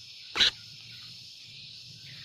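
One short, harsh call from a hand-held sooty-headed bulbul about half a second in, over a steady high drone of insects.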